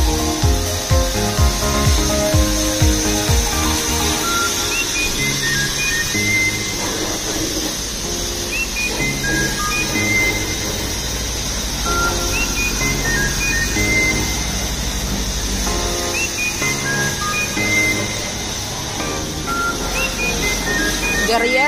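Background music: a beat in the first few seconds, then a melody of short high notes. Under it runs a steady hiss of a car-wash pressure-washer wand spraying water.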